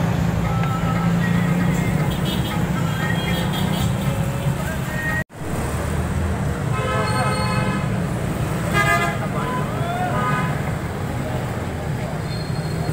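Street traffic with engines running steadily, and a vehicle horn sounding twice in the second half, each about a second long.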